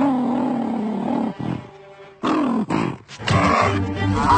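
Cartoon animal voice sounds: a growling call of just over a second, a shorter call falling in pitch about two seconds in, and another loud call starting a little past three seconds.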